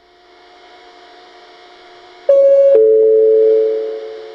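A two-note descending station PA chime from a JVC platform loudspeaker, a high note then a lower one, sounding about two seconds in. It is the lead-in to a next-train announcement. The lower note rings on and fades, heard over a faint steady hum and hiss from the platform.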